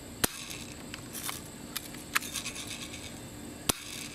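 Two sharp BB gun shots about three and a half seconds apart, with a few fainter ticks between them. The shots miss, as the can stays standing.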